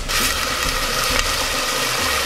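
Hennessy cognac poured into a hot steel pot of oil, onions and green peppers, setting off a loud, steady sizzle that starts suddenly.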